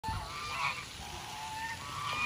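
Geese honking: several calls in the first second, then a longer call that rises slightly in pitch.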